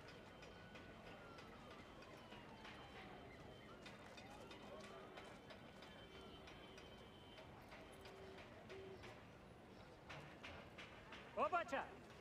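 Faint outdoor ambience with scattered light ticks and steps, then a voice briefly calls out near the end.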